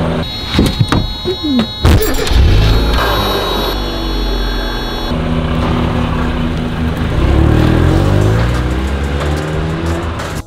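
First-generation Mazda Miata's four-cylinder engine running as the car pulls away from the curb, rising in pitch as it accelerates near the end, with music playing over it.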